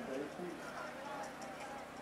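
Voices of people talking nearby, softer than the talk just before and after, over the steady murmur of an outdoor crowd.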